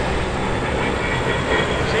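A-10 Thunderbolt II's twin turbofan jet engines running steadily as the jet flies by.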